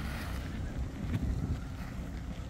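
Wind buffeting the microphone with a low rumble, over a steady rushing hiss of steam venting from a geyser.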